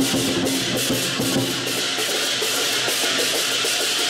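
Lion dance percussion: a large Chinese drum beating with hand cymbals clashing continuously over it, the cymbals ringing.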